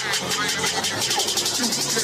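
Hip-hop dance mix playing for a stage routine: a spoken voice sample over a fast roll of sharp beats that speeds up toward the end, building into a transition.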